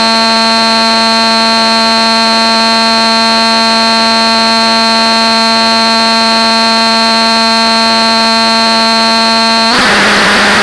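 Electronic noise drone from a knob-controlled noise box run through a Yamaha FX500 effects unit: a loud, steady, alarm-like buzzing tone with many overtones. Near the end it changes abruptly into a harsh rushing noise as a knob is turned.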